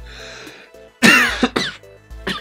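Background music with a steady beat. About a second in, a man coughs loudly into his fist for just under a second.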